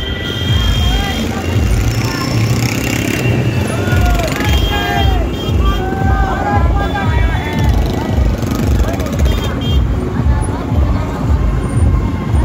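Several motorcycles running at low speed in a dense group, with a steady low rumble, while people's voices call out over music playing from a loudspeaker.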